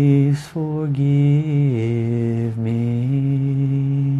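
A man's single voice chanting a forgiveness mantra in slow, long-held notes, with a short breath about half a second in. The pitch steps down a little near the middle and back up about three seconds in.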